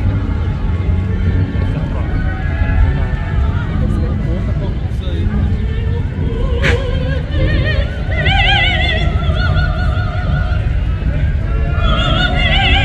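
A woman singing operatically through a microphone and loudspeaker, high held notes with a wide vibrato, loudest from a little past the middle, over a steady low rumble of crowd and street noise.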